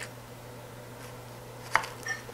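A kitchen knife slicing off the end of a yellow onion, its blade knocking once sharply against a wooden cutting board near the end, over a faint steady hum.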